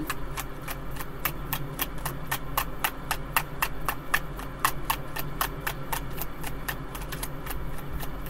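A tarot deck being hand-shuffled, the cards clicking against each other in a rapid, even rhythm of about five clicks a second.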